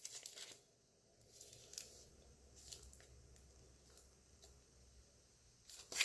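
Mostly near silence, with a few faint, short crinkles and rustles of plastic-and-paper peel-pack pouches being handled, a little busier near the end.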